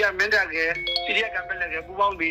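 A man narrating in Burmese. A short chime of a few held tones sounds over the voice about a second in.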